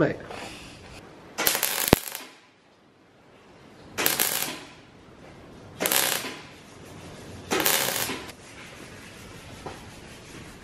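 MIG welder tack-welding steel reinforcement plates onto a car's strut tower: four short bursts of arc crackle, each about half a second long, with pauses between them.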